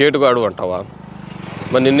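A man speaking Telugu in two short bursts, over a steady low engine drone that grows louder toward the end, as from an approaching motor vehicle.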